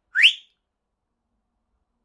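A single short whistle that glides quickly upward in pitch, lasting about a quarter of a second near the start.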